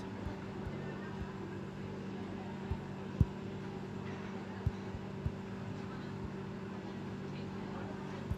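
Steady low hum of room noise picked up by a phone's microphone, with a few soft low thumps from the phone being handled while scrolling, the loudest about three seconds in.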